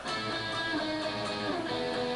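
Electric guitar playing a phrase of two-note double stops, several held notes changing in a row.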